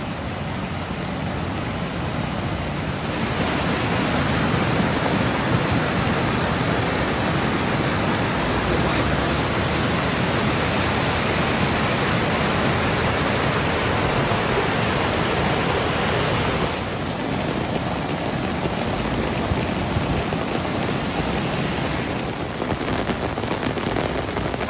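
Muddy floodwater rushing and cascading over a washed-out road edge, a steady, dense rush of water. It grows louder a few seconds in and eases a little about two-thirds of the way through.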